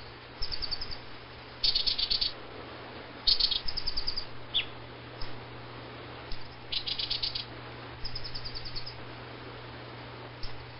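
Baya weaver giving chattering calls: five short bursts of rapid, high chirps, with a single falling note about four and a half seconds in. A faint steady low hum sits underneath.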